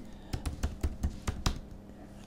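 Computer keyboard being typed on: a quick, uneven run of key clicks.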